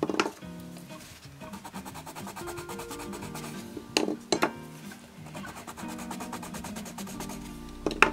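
Background music over Derwent Chromaflow coloured pencils scratching on toned kraft paper as colour swatches are laid down, with two sharp clicks about four seconds in as pencils are set down on the table.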